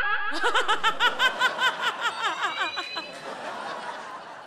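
A person laughing loudly and high-pitched in quick, even 'ha-ha-ha' pulses, about five a second. The laugh fades after about three seconds into a softer murmur of laughter.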